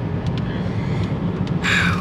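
Steady low road and engine rumble inside a moving car's cabin, with a brief hiss near the end.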